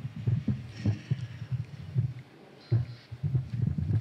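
Microphone handling noise through a PA: a run of irregular low thumps and bumps as the mic on its boom stand is adjusted, with a short lull a little after halfway.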